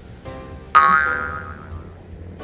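Background music with plucked, ringing notes. The loudest note strikes about three-quarters of a second in and fades away over the following second.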